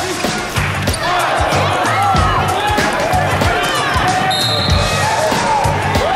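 A basketball dribbled on a hardwood court during live play, under background music with a steady beat.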